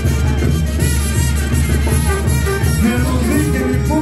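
Mexican banda music playing, with brass notes over a steady low bass line.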